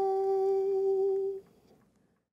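A woman humming one steady, held note that stops about one and a half seconds in.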